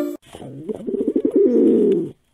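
A dove cooing: one long, low, rolling coo that starts about a quarter second in, rises at first and then holds for nearly two seconds.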